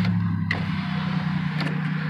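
Car cabin noise while driving: a steady low engine and road hum, with a single click about half a second in.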